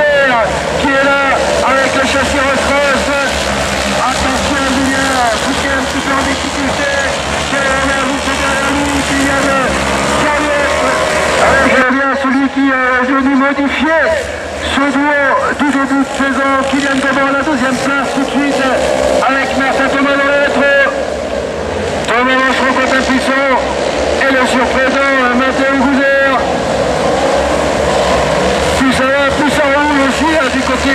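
Autocross race cars' engines running on a dirt circuit, a steady engine drone under a commentator's voice over a public-address loudspeaker. The sound changes abruptly about twelve seconds in.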